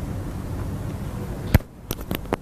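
Low rumbling background noise, cut off by a single sharp pop about one and a half seconds in, followed by a couple of fainter clicks.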